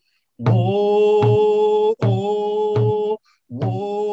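A man singing in long held notes while beating a rawhide hand drum steadily, about one stroke every three-quarters of a second. The singing breaks off briefly just after three seconds in and starts again.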